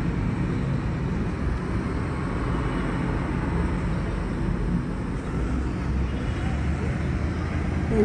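Busy multi-lane city road traffic: a steady low rumble of buses, vans and cars passing.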